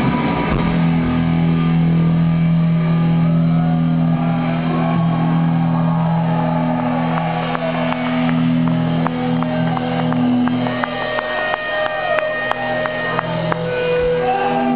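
Live metal band playing loud through a PA: electric guitars and bass hold long, steady low notes, with short ticks coming in over them in the second half.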